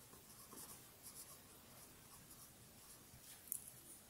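Marker pen writing on paper: faint, short scratchy strokes, with a sharp small click near the end.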